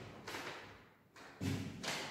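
Sheets of paper being handled at close range: a few soft thumps, the loudest about one and a half seconds in.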